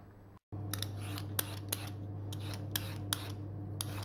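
Hand-held vegetable peeler scraping along a raw carrot, a quick irregular series of short scraping strokes starting about half a second in, over a steady low hum.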